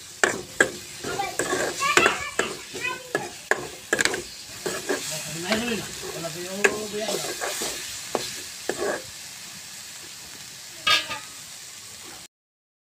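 Metal spatula scraping and clacking against a metal karahi as a thick masala paste is stirred and fried down, with a light sizzle under it. The strokes thin out about three-quarters of the way in, leaving the sizzle and one more knock near the end.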